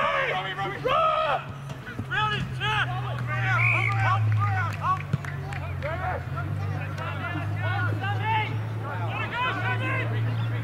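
Several voices shouting and calling out across an Australian rules football field during play, short overlapping calls throughout, over a steady low hum.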